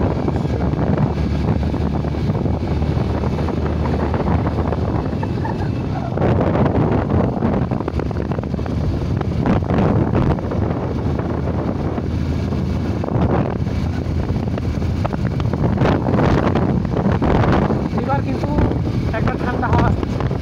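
A vehicle's engine running steadily as it drives along, a low drone, with wind rushing and buffeting over the microphone.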